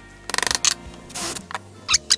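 Small metal parts being handled at a steel bench vise: a quick rattle of clicks, one more click, a short scrape, then a few light clicks near the end, over soft background music.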